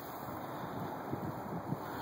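Faint wind noise on the microphone: a steady low hiss with soft, irregular low buffets.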